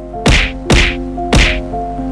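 Three short, sharp noises about half a second apart, over soft background music with sustained notes.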